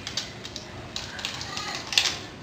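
Scattered light clicks and rustles as a child handles a toy and its packaging from a gift box, with a sharper click near the end.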